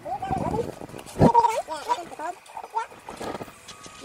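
Indistinct voice sounds with no clear words, broken by a sharp knock about a second in.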